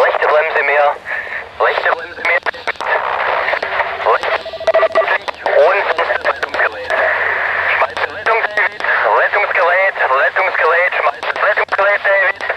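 A voice coming over a two-way radio, thin and tinny, with hiss between the phrases.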